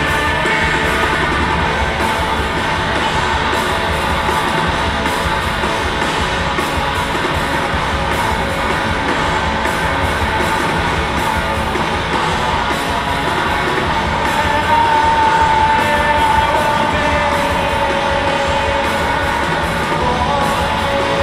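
Live rock band playing loud, with distorted electric guitars, bass and drums and shouted vocals, heard from the audience in a large hall. A sustained high note swells louder about fifteen seconds in.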